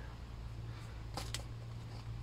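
Handling of a plastic bait-liquid (glug) bottle: two quick clicks a little over a second in, over a steady low hum.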